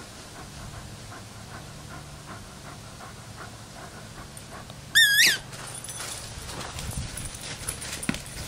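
A dog panting with quick, regular breaths, then a short, loud, high-pitched whine with a wavering pitch about five seconds in. Dogs' paws then scuffle through dry fallen leaves.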